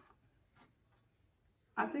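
Faint rubbing and a few light clicks of a plastic eyeshadow palette being handled and its clear lid opened. A woman's voice starts near the end.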